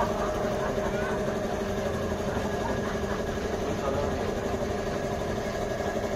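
A steady mechanical hum, like a motor or engine running, with faint indistinct voices.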